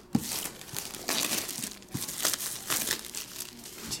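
Clear plastic wrap crinkling in irregular rustles as it is handled and pulled away from a trading-card box.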